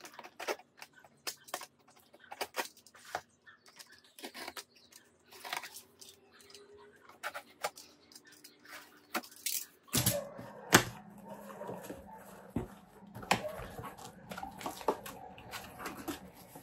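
A utility knife cutting and scraping through the packing tape on a cardboard shipping box, a run of short irregular clicks and scrapes. From about ten seconds in the cardboard gives a fuller rustling and scraping as the flaps are worked open.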